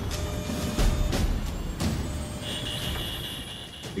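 Dramatized airliner cockpit soundscape: a steady low engine and airframe rumble under tense music, with a few sharp hits. A steady high-pitched warning tone starts a little past halfway, signalling the plane nearing a stall.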